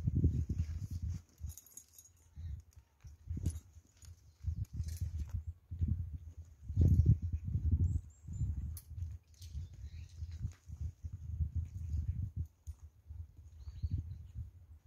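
Wind buffeting the microphone in irregular gusts of low rumble, with a bird chirping faintly about eight seconds in.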